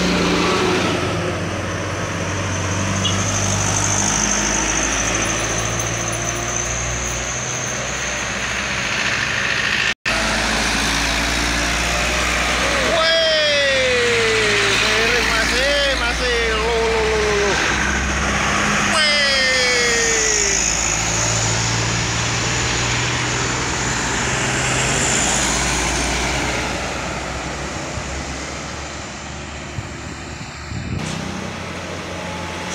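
Trucks passing close at speed one after another, their diesel engines running loud over steady tyre and road noise. Around the middle a pitched sound falls and wavers, then falls once more, and the sound breaks off for an instant about a third of the way in.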